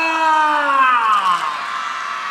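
A man's long, drawn-out call through a stage microphone: one held note whose pitch slides down and fades about a second and a half in.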